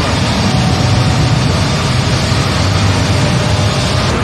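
Granite polishing line machinery running: a loud, steady noise with a strong low hum.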